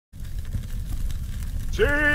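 A large open bonfire roaring with faint crackles, cutting in abruptly just after a moment of silence. Near the end a man shouts a long, triumphant 'Sì!' over it.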